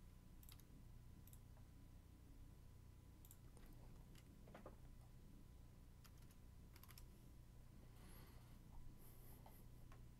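Near silence with scattered faint computer mouse and keyboard clicks, a quick run of them near the end, over a low steady hum.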